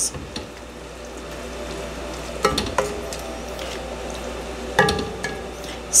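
A wooden spoon stirring cooked green beans, bacon and mushrooms in a wet butter sauce inside an enamelled cast-iron pot: a steady, soft wet stirring with a few light knocks of the spoon against the pot, around two and a half and five seconds in.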